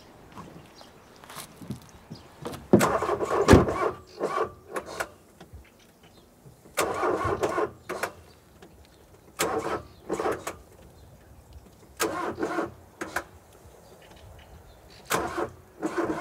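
A car's starter motor cranking in five short tries of about a second each, with pauses between, the engine not catching. A thump about three and a half seconds in.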